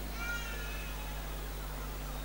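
A short, faint, high-pitched cry lasting about half a second near the start, over a steady low hum.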